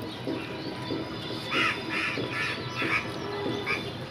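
Background music with a steady run of low notes, and a crow cawing about five times in the second half.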